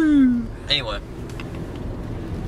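Steady low road and engine rumble inside a moving car. At the start a person's long held vocal note slides down in pitch and ends, with a short voice sound just under a second in.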